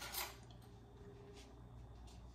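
Quiet kitchen room tone with a low steady hum, broken by one brief soft scrape just after the start and a fainter one near the middle: small handling noises at the counter.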